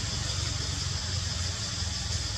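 Steady outdoor background noise: a continuous low rumble under an even, high-pitched drone, with no calls or knocks.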